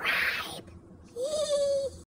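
A man's goofy non-word vocal noise: a breathy huff, then about a second in a short hooting "ooh" that rises, holds on one pitch and eases down.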